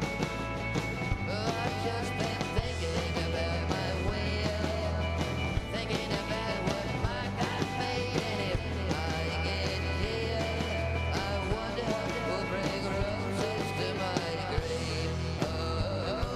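Live rock band playing: electric guitars, bass and drums with a steady beat.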